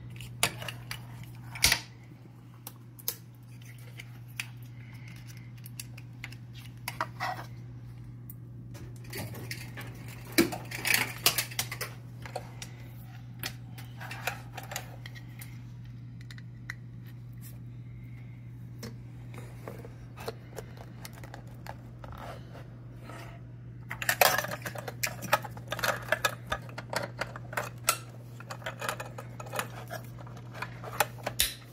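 Plastic wiring-harness connectors and a USB cable being handled and plugged in on a workbench: irregular clicks and rattles, in a cluster about ten seconds in and again through the last six seconds, over a steady low hum.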